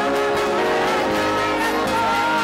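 A praise team of several singers singing a worship song into microphones, with amplified instrumental accompaniment; the voices and chords are held steady.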